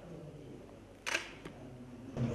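Quiet room tone with a faint low hum, broken about a second in by one sharp click and a fainter second click just after.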